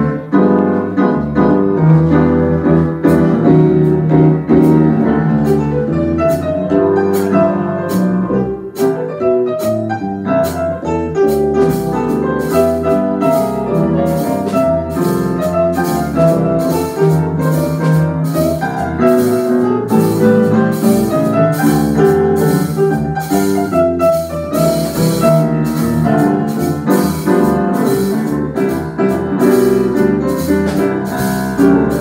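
Small jazz combo playing a tune: grand piano leading with chords and melody, over electric bass and a drum kit whose cymbals keep a steady beat that grows more prominent partway through.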